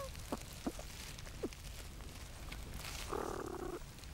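Platypuses in their nesting burrow, picked up by a microphone inside the chamber: three or four short rising squeaks in the first second and a half, then a brief rasping grunt about three seconds in, over a steady low rumble.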